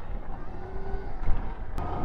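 Rawrr Mantis X electric dirt bike at speed: heavy wind rumble on the microphone with tyre noise, a faint steady motor whine in the middle, and a sharp click near the end.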